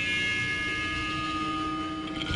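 A steady hum of a few held tones from the band's stage amplification, ringing on and slowly fading in a pause between loud guitar hits.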